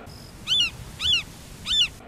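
Three short, high-pitched eagle cries, evenly spaced a little over half a second apart, each rising and then falling in pitch. This is an eagle-call sound effect.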